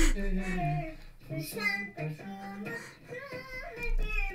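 A young boy singing a short tune in a small room, with held notes broken by brief pauses.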